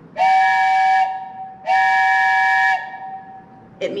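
A wooden train whistle blown in two long blasts of about a second each, each sounding a steady chord of several tones: the signal for the brakes released and the train moving forward.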